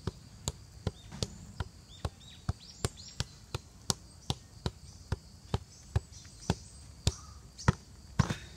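A football being juggled on the feet, a steady run of light taps of ball against shoe about two and a half times a second, the last ones the loudest.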